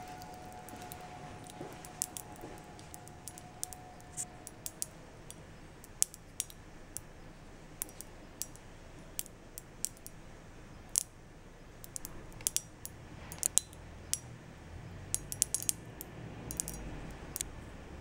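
Silica gel desiccant beads in a steel spoon popping after a few drops of water were added. The dry beads crack apart as they soak up the water. The pops are irregular sharp clicks, scattered at first and coming in quick clusters in the last third.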